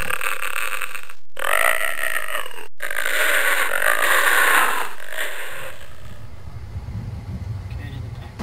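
A drawn-out vocal sound made with the mouth as a sound effect, in three stretches broken by two brief dead-silent cuts, then fading away over the last couple of seconds.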